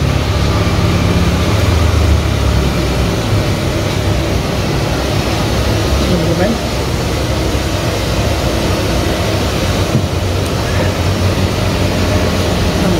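Steady street and traffic noise: a low engine rumble, strongest in the first few seconds, under a constant hiss.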